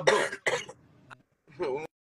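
A man's voice: a spoken word, then a short noisy vocal sound and a pause of near silence, ending with another brief vocal sound.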